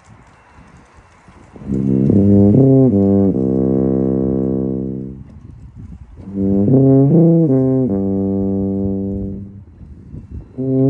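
An E-flat tuba plays two slow phrases, beginning a little under two seconds in. Each phrase is a few quick stepping notes that settle into a long held low note. The first held note fades out around five seconds, and the second starts again about a second later.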